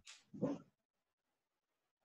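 A man's voice trailing off, with one short vocal sound about half a second in, then complete silence.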